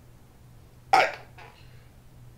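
A man coughs once, briefly, about a second in, followed by a fainter after-sound.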